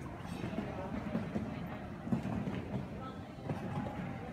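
Indistinct murmur of voices in an indoor arena, with a few short dull thuds from a horse cantering on sand footing; the sharpest thud comes about two seconds in.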